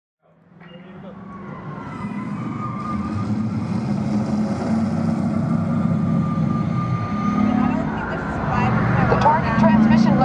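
Test Track ride vehicle rolling along its track through the show building: a steady low drone that fades in from silence over the first couple of seconds.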